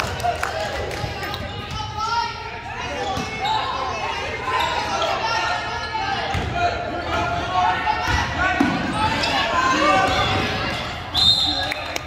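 A basketball being dribbled on a hardwood gym floor, amid voices calling out across the echoing gym.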